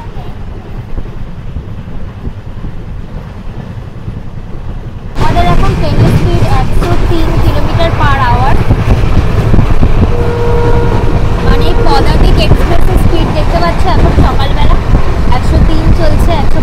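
Padatik Express passenger train running along the track, heard inside a sleeper coach as a steady low rumble. About five seconds in it jumps suddenly much louder and fuller.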